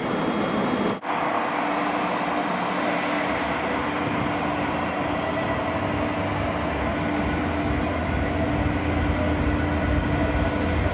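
San Diego Trolley light-rail vehicle, a Siemens S70, running on the tracks: a steady hum with a low rumble that strengthens from about three seconds in. The sound cuts in abruptly about a second in.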